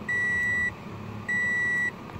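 Instrument-cluster warning chime of a 2014 Toyota Corolla, sounding with the ignition just switched on: two steady, high single-tone beeps, each about half a second long and a bit over a second apart.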